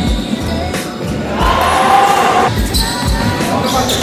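A basketball bouncing on a gym floor during play, with irregular dull thuds, and a voice calling out in the middle.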